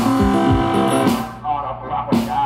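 Delta blues instrumental from a one-man band: acoustic guitar picking sustained notes over a steady kick-drum beat, with a cymbal hit about a second in.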